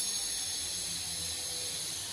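Steady hiss from a kadhai of oil heating on a gas stove.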